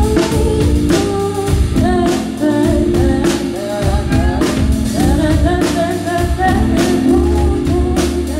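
Live pop band playing: a lead vocal sings over sustained keyboard chords and a bass line, with a steady drum-kit beat.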